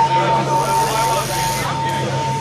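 Live rock club between songs: crowd chatter and shouts over a steady high tone and a low hum from the band's amplifiers left on.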